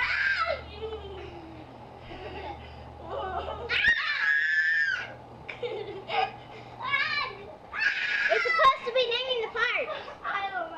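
A young girl squealing and giggling while being bounced about on a man's shoulders, with two long high-pitched shrieks, about four seconds in and again about eight seconds in.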